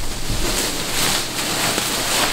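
Black plastic trash bag rustling and crinkling steadily as clothes are dug out of it.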